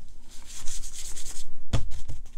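Embossing buddy (fabric anti-static pouch) rubbed back and forth over copper cardstock, a dry brushing rustle that rises and falls with the strokes, taking static off the card before heat embossing. A dull thump near the end.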